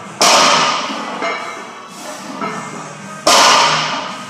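Loaded barbell set down on a rubber gym floor twice, about three seconds apart, during deadlift reps: each a loud clank of the plates that rings on briefly. Music plays underneath.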